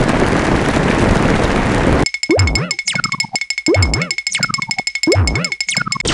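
A steady rushing noise for about two seconds, then it cuts to a cartoon boing sound-effect tune: three springy boings about a second and a half apart over a fast ticking beat, with sliding whistle-like glides between them.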